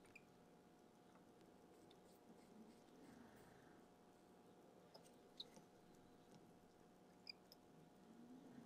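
Near silence: faint room tone with two faint small clicks of small watch parts being handled, one a little after five seconds in and one near the end.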